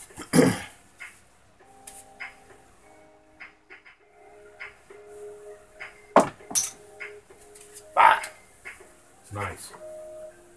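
A pair of dice thrown onto a felt-covered craps practice table: a loud clatter just after the start and sharp clicks about six seconds in, with soft background music playing.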